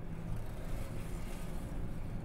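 Low, steady rumble of room background noise, with no speech.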